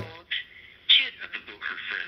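Thin, narrow-band speech decoded from an M17 digital voice signal and played out of a web SDR receiver, sounding like a radio or telephone voice. It starts a fraction of a second in and grows louder about a second in.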